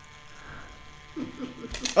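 The small electric motor of a Loopin' Chewie game, whirring quietly as it swings the arm round. A short voice sound comes in after about a second, and a few sharp plastic clacks follow near the end.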